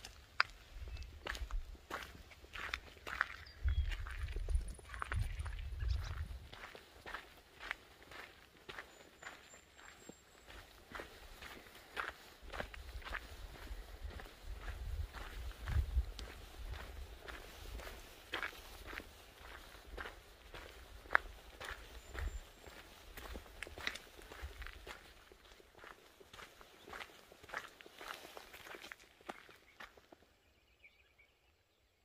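A hiker's footsteps crunching on a gravel trail at a steady walking pace, roughly two steps a second, with bouts of low rumble.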